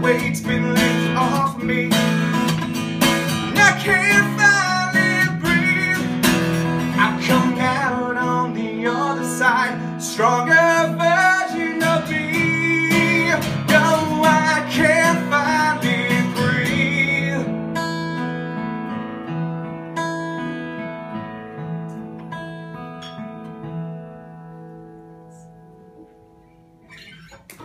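Strummed acoustic guitar with a man singing a sliding, held vocal line over it. About 17 seconds in, the singing stops and the last guitar chord rings out and slowly fades away, closing the song.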